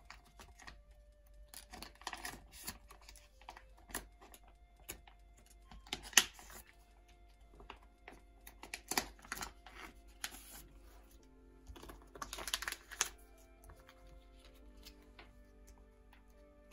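Background music with held notes, over the crinkling and clicking of plastic binder pocket sleeves as photocards and placeholder cards are slid out of them. There is a sharp click about six seconds in, and busier rustling around nine and twelve seconds.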